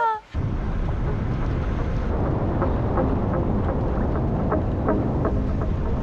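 A vehicle driving on an unsealed dirt road: a steady low rumble of tyre and wind noise with faint light ticks scattered through it, starting a moment in.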